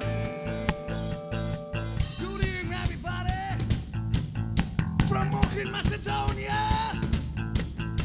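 A live rock band playing on electric guitars, bass guitar and drum kit. About two seconds in, held chords give way to a lead line of bending, wavering notes over the drums.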